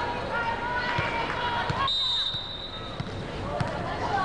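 Volleyball arena crowd noise with voices, and a few dull thuds of a volleyball bounced on the court floor as the server gets ready to serve.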